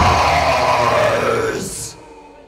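Live metal band's distorted bass, guitar and growled vocal holding a last chord that fades and stops near the end, as a song ends.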